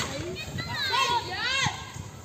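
Sharp crack of a cricket bat striking the ball right at the start, followed by excited shouting from the players.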